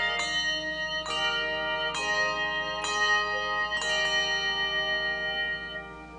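Handbell choir ringing: five chords struck about a second apart, each left to ring on, the last one fading away near the end.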